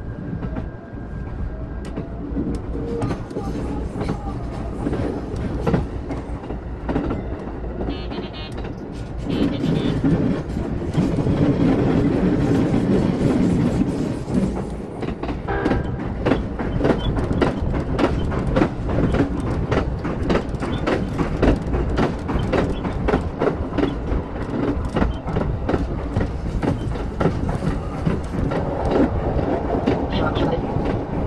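Running noise of a JR East local train heard from inside the front car: a steady rumble of wheels on rails that swells for a few seconds in the middle. In the second half it turns into a fast, dense clatter of clacks and rattles as the train crosses a steel railway bridge.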